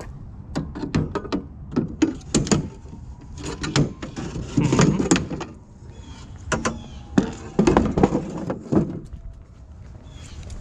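Wooden panel and steel frame of a plywood-bedded cart knocking and rattling as the cart is lifted and its loose back board is pulled out: a run of sharp knocks in several clusters.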